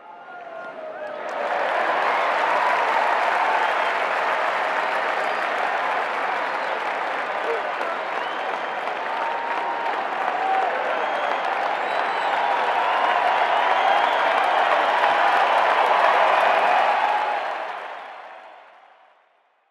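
Large crowd applauding and cheering, a dense roar of clapping and many voices that fades in over the first couple of seconds and fades out near the end.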